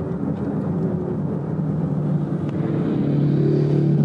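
Steady road and car noise, then a cruiser motorcycle's engine note growing louder about three seconds in as the bike pulls alongside the car to overtake it.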